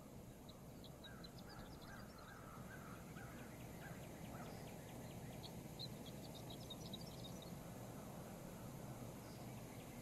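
Faint outdoor country ambience from a TV teaser's soundtrack: a steady low hiss with birds chirping in quick runs through most of the first seven seconds.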